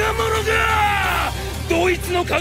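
A man yelling: one long, drawn-out shout, then quicker shouted words near the end, over background music.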